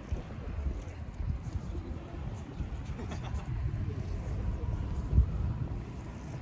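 Wind buffeting the microphone: an uneven low rumble that comes and goes in gusts, with one sharper, louder gust about five seconds in.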